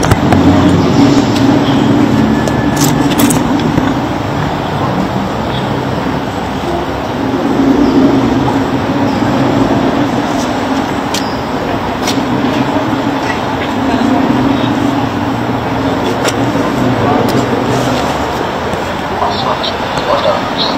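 Steady low hum of street traffic that swells and fades over several seconds, with people's voices talking over it.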